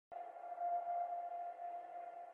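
Faint, steady electronic tone held on one pitch, with quieter overtones: a synth pad starting the background music.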